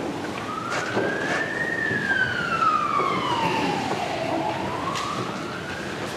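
Emergency vehicle siren in a slow wail: the pitch rises over the first two seconds, falls for about two and a half seconds, then climbs again near the end. A few faint knocks sound under it.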